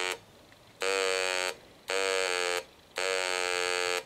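A homebrew 555-timer VCO, an audible tuning indicator wired across a resistive antenna bridge's meter, sounds a steady buzzy tone in four bursts with short silent gaps between them as carrier is applied. The tone means the antenna coupler is not quite tuned up: the bridge is still showing a reading rather than a null.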